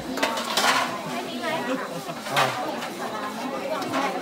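Stainless steel food trays and serving spoons clinking as food is dished out, amid the chatter of a crowd. The loudest clinks come about half a second in and again just after two seconds.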